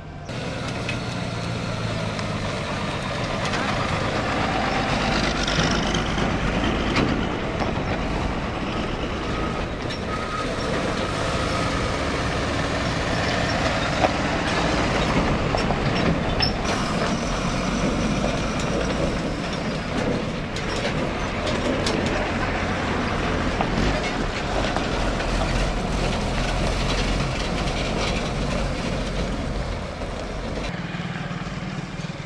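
Heavy container trucks driving past close by, their diesel engines running under a steady wash of traffic noise, with a few short sharp sounds along the way.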